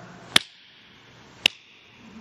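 Two sharp clicks about a second apart over faint room tone.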